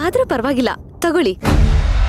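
A woman's voice for the first second or so, then, about a second and a half in, a sudden deep boom sound effect that goes on as a loud low rumble and drone: a dramatic stinger marking a shocked reaction.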